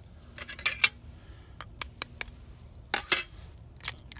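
Sharp clicks and light taps of hands working items at a mess-kit pot set on a camp stove: a cluster about half a second in, single ticks over the next second and a half, another cluster about three seconds in, and a few more near the end.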